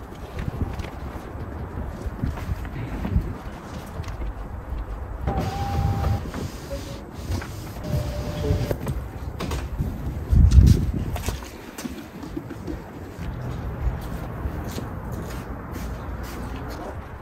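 Microfibre cloth wiping glass cleaner across a car window, over a steady low street rumble that swells about ten seconds in.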